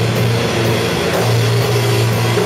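Live rock band playing loud: electric guitars and a held low bass note over a drum kit, with cymbal strikes about twice a second.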